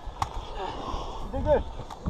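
Two sharp clicks about a second and a half apart, the first just after the start and the second near the end, over low background noise, with a single spoken word between them.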